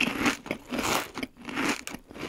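Close-up crunching and chewing of a piece of hardened candy-melt coating, in a quick, irregular run of bites.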